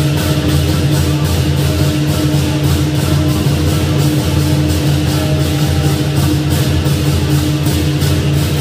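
Lion dance percussion: a big drum beating a fast, steady rhythm under crashing cymbals and a ringing gong, played live to accompany the lion's pole routine.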